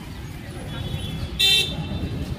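A short, high vehicle horn toot about one and a half seconds in, over a steady low background rumble.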